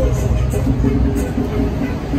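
Street traffic: a vehicle's low rumble that fades near the end.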